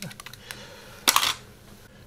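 A few light clicks as a pair of eyeglasses is handled and put on, then a short, louder burst of noise about a second in.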